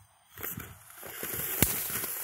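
Firework fountain igniting: after a brief quiet, a spraying hiss builds from about a second in, with one sharp crack partway through, and then carries on steadily. There is no whistle, though the fountain is sold as a whistling one.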